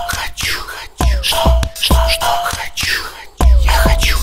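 Background music: a track with a bass-heavy beat and a breathy, whispered vocal. The beat drops out briefly near the end and comes back.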